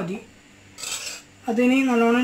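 A metal utensil against an iron frying pan of oil: a short scrape about a second in, then a wavering pitched tone near the end.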